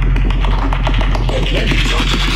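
Heavy dubstep: a constant deep sub-bass under rapid, stuttering bass and percussion hits, processed with 8D audio panning.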